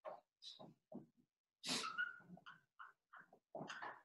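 Marker writing on a whiteboard: short, faint squeaks and scrapes, one per stroke, in quick irregular succession.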